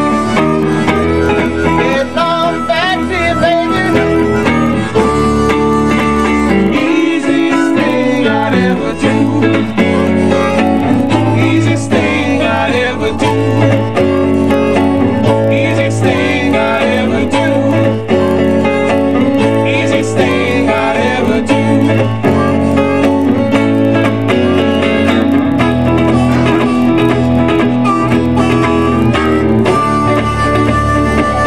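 Live blues with harmonica and electric guitar playing over a low bass line, which drops out briefly about seven seconds in.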